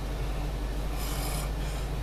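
2010 Mustang GT's 4.6-litre V8 idling, a steady low hum heard inside the cabin, with a faint rustle about a second in.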